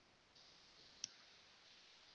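Near silence with a faint hiss, broken by a single short, sharp click about a second in.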